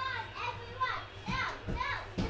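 A young child's high-pitched voice: about four short calls or squeals in quick succession, each rising and falling in pitch, over a low steady hum.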